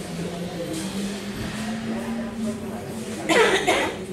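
Men's voices in the hall: a drawn-out voiced sound, then a loud, short vocal outburst about three and a half seconds in.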